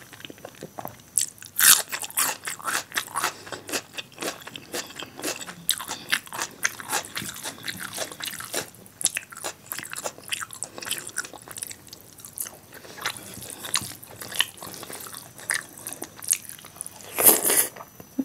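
Close-miked chewing of a handful of rice with dal and masala brinjal: wet mouth clicks and crackles that keep up steadily, with a louder burst just before the end.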